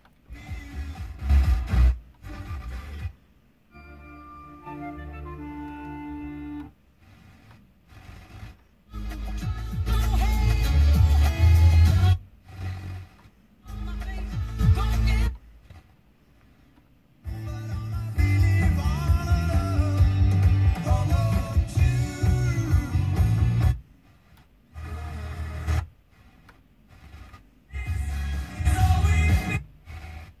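A car FM radio being tuned step by step up the band: short snatches of music and broadcast audio from one station after another. Each is cut off by a brief silence as the tuner moves to the next frequency.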